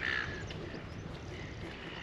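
A bird gives one short, harsh call right at the start, followed by fainter calls later, over a steady low background rumble.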